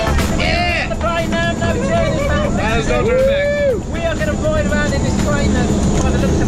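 Engine and propeller of a small jump plane running steadily, heard from inside the cabin, with people chatting and laughing over the drone.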